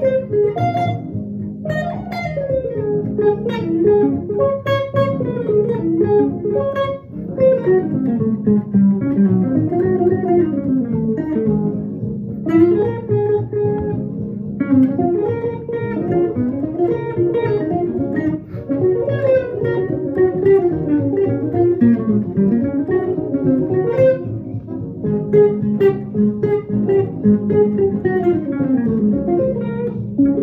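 Electric guitar playing a single-note swing jazz solo in D-flat: quick phrases of eighth-note runs over ii–V changes, broken by short rests.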